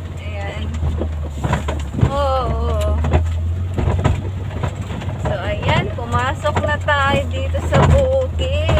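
A vehicle's engine running with a steady low drone, heard from inside the cabin while driving a rough dirt track, with short knocks from the bumps. People's voices come over it twice.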